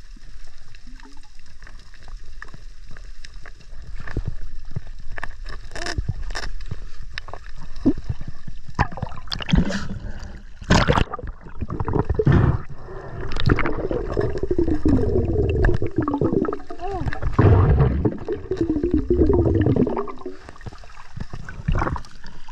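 Heard underwater: scattered sharp clicks and scrapes as a metal hook probes coral rock for an octopus. From about halfway, a louder, muffled, wavering voice comes through the water.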